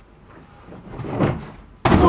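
A person diving belly-first onto a hotel bed in a wrestling-style frog splash: a single sudden, loud thud of the body hitting the mattress near the end.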